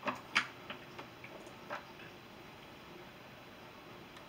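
A few small sharp clicks and taps from a plastic liquid-highlighter tube and its wand being handled, the loudest about half a second in, over low room hiss.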